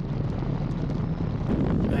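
Piper J3 Cub's engine running as the plane rolls down the runway, with wind rushing over the microphone. The sound is a steady, low rumble.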